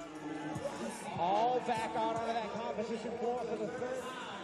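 Music with a beat and a voice over it, played through arena loudspeakers, loudest about a second in.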